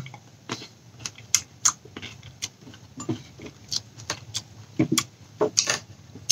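A person chewing a seeded grape: irregular soft clicks and crunches, a few each second.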